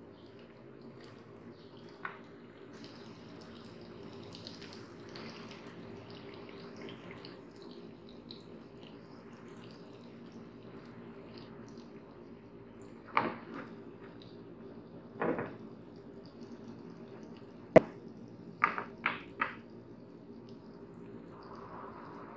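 Semolina-coated fish slices sizzling quietly in shallow oil in a frying pan over a low flame, over a steady low hum. Several short sharp clicks and knocks come in the second half.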